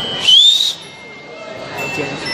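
A person in the audience whistling: a steady high note that swoops up in pitch into one loud whistle, lasting about half a second, then stops abruptly.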